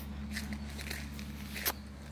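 A few footsteps of a person walking, heard as brief soft clicks, over a steady low background hum.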